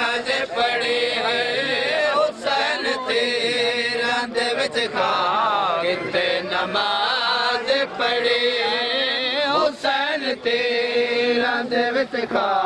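A crowd of men chanting a noha, a Shia mourning lament, together in a repeating sung melody, with a few short sharp knocks scattered through it.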